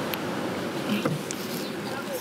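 Steady ocean surf and wind noise on a beach, with faint voices and a couple of brief knocks as people push a fibreglass fishing boat up the sand.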